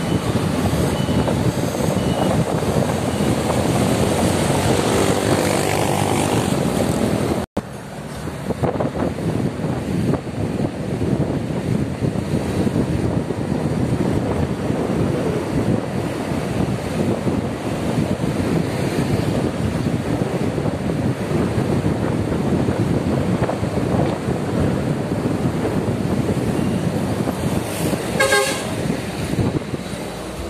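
Steady engine, road and wind noise from a motorcycle riding at speed, cutting out for an instant about seven seconds in. A vehicle horn toots briefly near the end.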